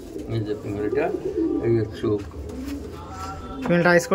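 Domestic pigeons cooing in a loft, several birds at once, a low, warbling murmur of coos. A man's voice comes in near the end.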